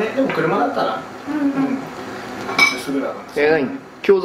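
Indistinct conversational voices of people talking at a table, coming and going in short phrases.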